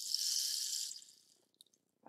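Rain stick turned over, its pellets trickling down inside with a rain-like hiss that fades out about a second and a half in.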